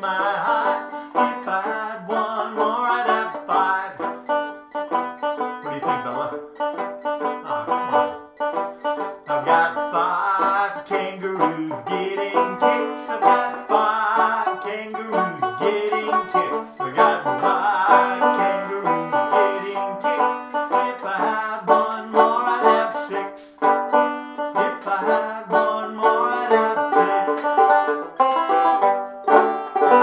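Resonator banjo played solo, a fast run of picked notes throughout, with a final chord struck at the very end that is left ringing.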